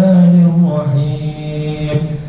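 A man's voice reciting the Quran in a slow, melodic chant into a microphone, holding long drawn-out notes.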